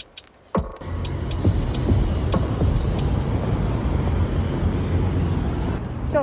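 Outdoor city street noise starting about a second in: a steady low rumble of traffic and wind on the phone's microphone.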